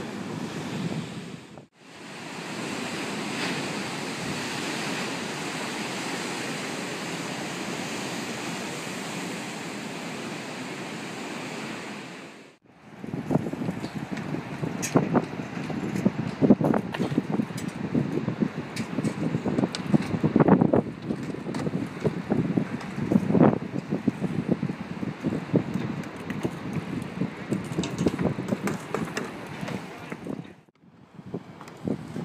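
Steady surf and wind noise for the first ten seconds or so. After a cut, wheels roll and clatter on a concrete skatepark, with frequent sharp clacks and knocks from bike and board impacts.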